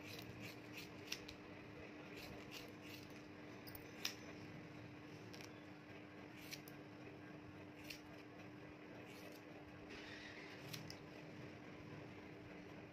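Steel hairdressing scissors snipping through hair in short, irregular cuts, the loudest about four seconds in, over a faint steady hum.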